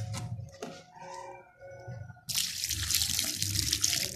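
Water poured onto a heap of dry sand-cement mix, starting suddenly a little over two seconds in as a loud, steady splashing hiss. Before it there are only faint, scattered sounds.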